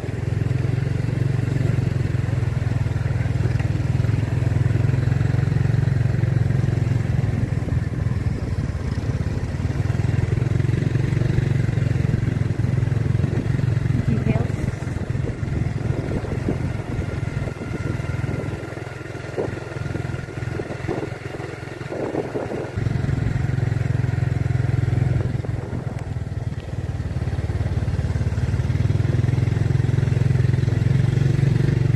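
Small motor scooter engine running at riding speed with wind rumbling on the microphone, easing off for a few seconds past the middle, then picking up again.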